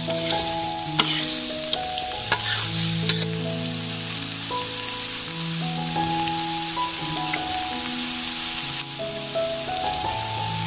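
Chopped greens and small dried fish sizzling as they stir-fry in a black wok, with a spatula scraping and knocking against the pan a few times in the first three seconds. A gentle background tune of slow, steady notes plays under the sizzle.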